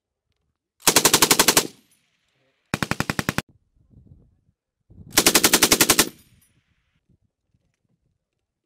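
A belt-fed machine gun firing three short bursts of automatic fire, each a rapid even string of shots at about a dozen rounds a second. The second burst is the shortest and the third the longest.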